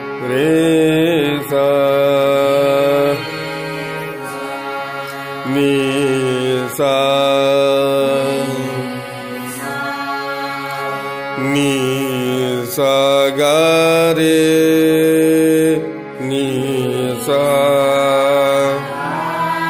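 Women's voices singing slow, drawn-out phrases of a swar vistaar in raga Bhimpalasi, the notes opened out gradually one at a time, over a steady harmonium drone. There are about six phrases, each ending on a long held note, with short gaps where only the harmonium sounds.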